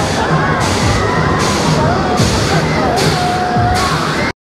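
Loud music with a steady beat playing from funfair rides. Many people's voices and shouts are mixed in.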